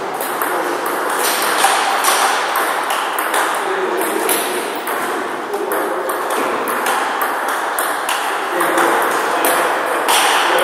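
Table tennis ball repeatedly clicking off paddles and the table in a rally, with voices in the background.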